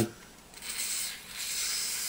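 Aerosol can of Rem Oil gun lubricant spraying into a shotgun's receiver: a steady hiss that starts about half a second in.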